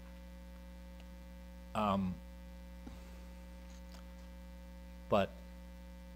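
Steady electrical mains hum, a low continuous buzz, with a brief spoken 'um' about two seconds in and 'but' near the end.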